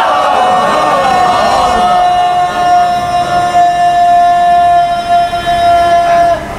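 A steady high-pitched tone held at one unwavering pitch, with no vibrato, growing over the first second and lasting about five seconds over a background of crowd voices.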